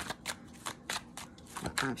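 A deck of tarot cards being shuffled by hand: a quick, irregular run of light card clicks.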